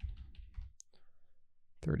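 A few quick clicks of computer keys as a price is typed in, bunched in the first second, then quiet.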